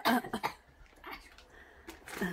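A person coughing several times in quick succession at the start, after eating spicy tortilla chips, then quiet with a single click near the end.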